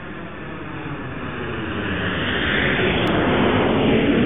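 Jet airliner passing, its engine rush swelling steadily louder.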